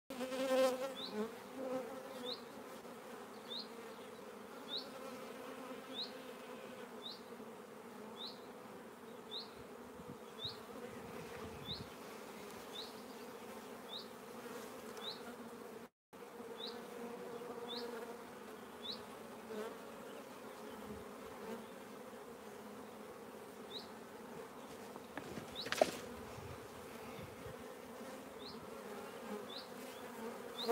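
Steady hum of honeybees flying around a strong, busy hive. A short high chirp repeats about once a second through much of it, and the sound cuts out for a moment about halfway.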